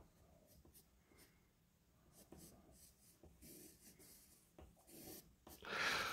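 Faint scratching of a graphite pencil making short strokes on paper, a few light strokes in the second half.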